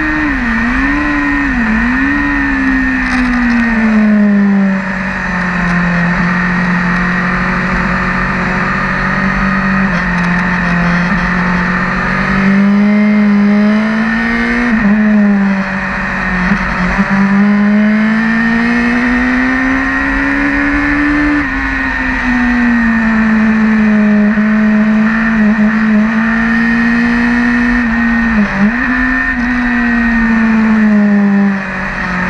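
Racing motorcycle's engine heard from onboard at track speed, its note rising and falling with the throttle over the whole stretch, with a few brief sharp dips in pitch.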